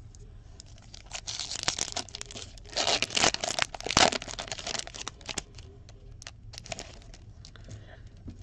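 A foil trading-card pack of 2016-17 Fleer Showcase hockey being torn open: a run of crackly rips and crinkles, loudest around three to four seconds in, then fading to a few light crinkles.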